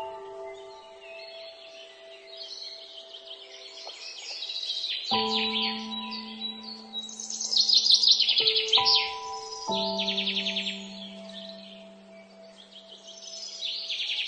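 Slow, soft piano music, sustained chords struck a few seconds apart, with trilling birdsong mixed over it; the birdsong is loudest about eight seconds in.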